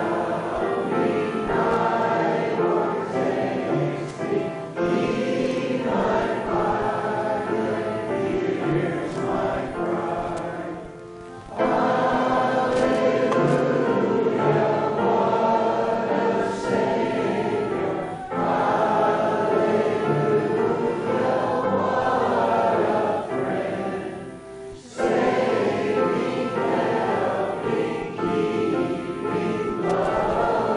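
A church congregation singing a hymn together, with short breaks between phrases about 11 and 25 seconds in.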